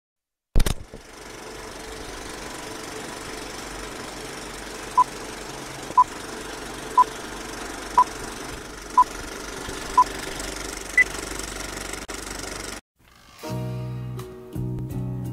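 Vintage film-countdown sound effect: a steady crackling, rattling film-projector run that starts with a sharp click. Six short beeps fall one a second, then one higher-pitched beep. It cuts off and a guitar song begins near the end.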